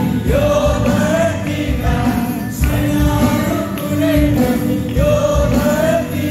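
A group of voices singing a Christian worship song together, with band accompaniment and a steady beat. The melody moves in repeated sung phrases.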